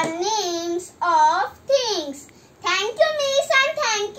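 A young boy's high-pitched voice in a sing-song, in short phrases with brief pauses, the pitch held level on some drawn-out syllables.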